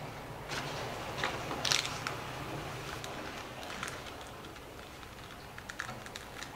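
Paper pages of a spiral-bound notebook being handled and turned: several short rustles, the loudest about two seconds in, with a few small ticks near the end, over a faint low hum.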